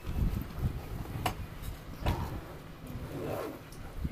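Uneven low rumble aboard a small tour boat out on open water, from wind on the microphone and the boat's motion. Two sharp clicks about one and two seconds in.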